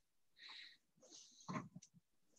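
Near silence with a man's faint breathing and mouth sounds between sentences, and a couple of light ticks near the end.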